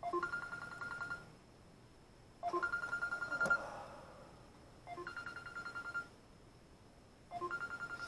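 Mobile phone ringing with an incoming call: a trilling electronic ring about a second long, heard four times about two and a half seconds apart.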